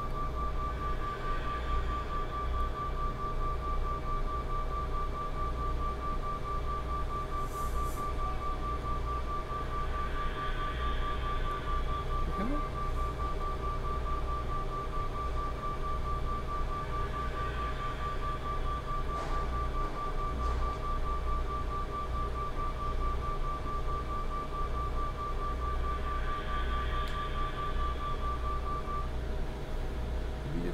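Looped playback of an excerpt from an electroacoustic composition: a high tone pulsing rapidly and evenly over a low hum, with a breathing, wind-like noise that swells about every eight to nine seconds as the loop comes round. The pulsing stops shortly before the end.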